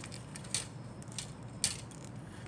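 Grey plastic model-kit sprue in its clear plastic bag being handled: light crinkling and a few sharp plastic clicks, the loudest about half a second in and near the end, over a faint steady low hum.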